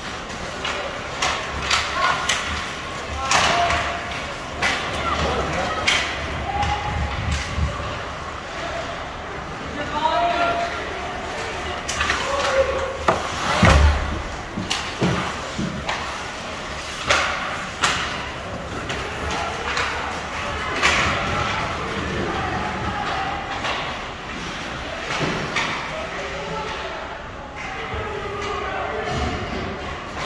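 Ice hockey play in a rink: scattered sharp knocks of sticks and puck against the boards and glass, the heaviest a deep thud a little under halfway through, with shouting voices throughout.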